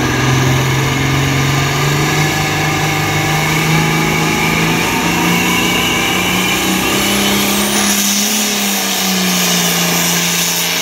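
International Harvester 466 diesel engine of a hot-farm pulling tractor running hard under load at the start of a pull, its pitch climbing steadily for about seven seconds, then levelling off and easing slightly.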